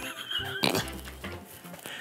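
Faint handling noise from gloved hands gripping and twisting a pineapple, with one short knock a little over half a second in.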